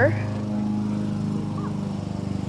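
Lawn mower engine running at a steady pitch, a low even drone.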